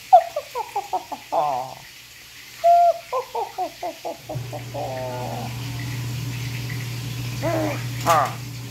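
A baby babbling in quick runs of short, high, mostly falling calls, several runs with short pauses between. A steady low hum starts about halfway through.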